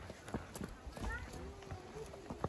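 Footsteps of several people walking on a rocky, leaf-strewn trail, short irregular knocks of shoes on stone, with indistinct voices talking.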